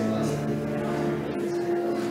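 Pipe organ playing slow, sustained chords, with the held notes changing shortly after the start and again a little past halfway.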